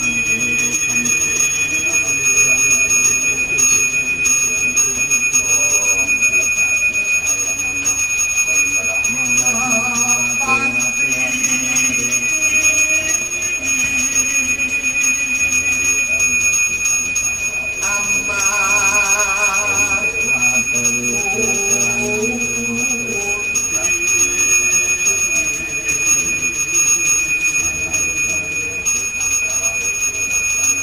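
A Hindu priest's hand bell (genta) rung without a break, giving a steady high ringing. Under it, a voice chants with a wavering melody.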